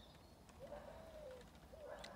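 Faint cooing of a bird: one long, low note beginning about half a second in, then a short one near the end.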